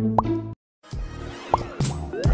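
Background music with short rising pitch swoops. It cuts out completely for a moment about half a second in, then a new, busier track starts.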